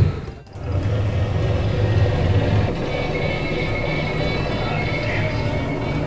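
Film trailer soundtrack played back through room speakers: music over a steady low rumble, with a brief dropout just after it starts.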